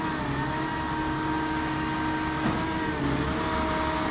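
Truck-mounted Schwing concrete pump's diesel engine running steadily with a steady whine, its pitch dipping slightly a couple of times.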